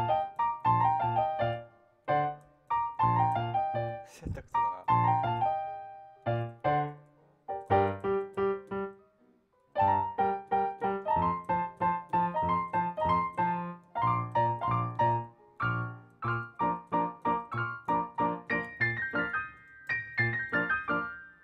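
Solo jazz piano on a digital piano: a melody over evenly repeated low left-hand chords, played in phrases with a brief pause about nine seconds in.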